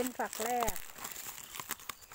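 Dry, papery husks of an ear of feed corn crinkling and tearing as fingers peel them back from the kernels: a quick run of small, crisp crackles.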